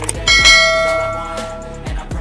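A bright bell ding from a subscribe-button animation's notification chime. It strikes about a third of a second in and rings down over about a second and a half, over background hip-hop music.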